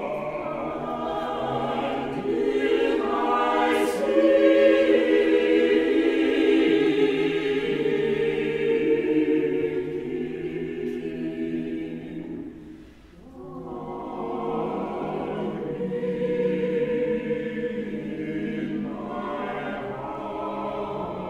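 Church choir singing a choral piece in several voices, with a brief break between phrases about two-thirds of the way through before the singing resumes.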